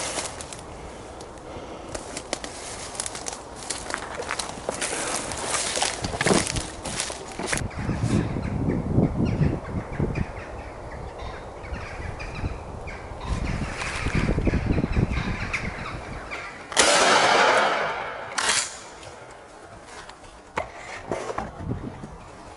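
Footsteps crunching through dry leaf litter and twigs, with clothing rustling against a body-worn camera. A loud rushing noise covers the microphone for about a second and a half near the end.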